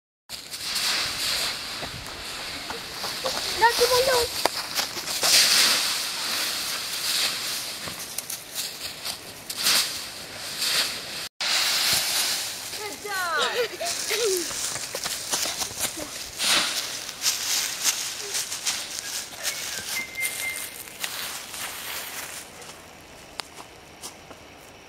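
Dry fallen leaves crunching and rustling as children jump and roll in a leaf pile, with short high children's squeals about four seconds in and again around thirteen seconds. It quietens near the end.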